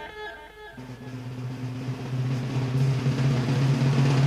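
Hard rock recording with guitar. A ringing chord dies away, then under a second in a held low note comes in and swells steadily louder.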